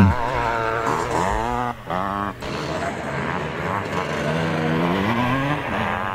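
Vintage twinshock motocross bike engine revving as the rider accelerates and shifts gear, its pitch climbing in repeated rising sweeps, with a brief drop off the throttle about two seconds in.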